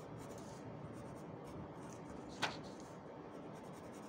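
Pencil sketching on paper: faint, steady scratching of the graphite as strokes are drawn, with one sharper stroke about two and a half seconds in.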